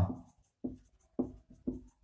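Marker pen writing on a whiteboard: about five short, quiet strokes.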